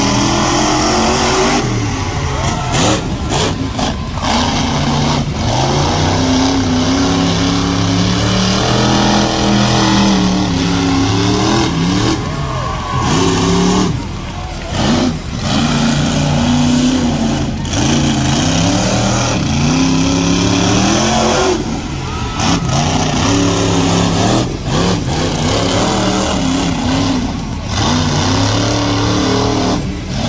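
Monster truck engines revving hard, the pitch climbing and dropping again and again as the trucks accelerate and back off.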